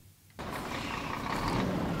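Scania tanker truck approaching on a gravelly road. Its engine and road noise start suddenly after a moment of silence and grow steadily louder.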